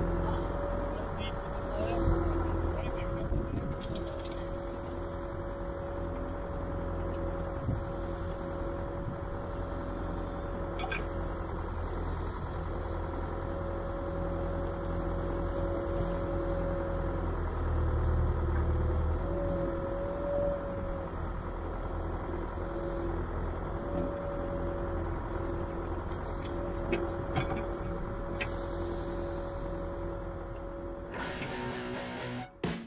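John Deere 310SE backhoe's four-cylinder diesel engine running steadily while the backhoe digs, with a steady whine over the engine note. The sound swells briefly about two-thirds of the way through.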